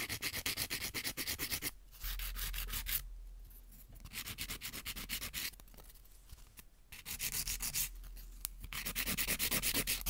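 Hand-held 180-grit nail file rubbed in fast back-and-forth strokes along the side of a long clear nail-tip extension, shaping the edge straight. The strokes come in several runs, several a second, with short pauses between runs.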